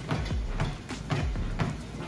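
Home treadmill running, its motor humming under quick, regular knocks of footfalls on the belt, about four a second.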